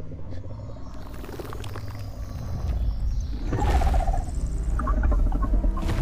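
Movie sound-effect vocalization of a giant dinosaur: a deep, rumbling growl that grows louder about halfway through.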